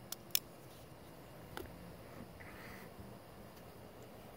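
Quiet handling noise: two faint clicks in the first half-second, another about a second and a half in, and a brief soft rustle a little later.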